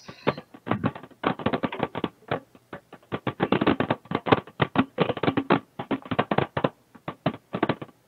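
Rapid, irregular crackling clicks on a conference-call audio line, coming from a participant's phone or microphone.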